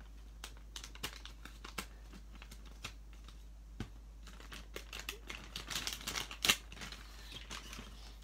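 Plastic blind-bag toy packet crinkling and crackling as it is handled and pulled open by hand, with scattered sharp clicks and a denser burst of crinkling about six seconds in.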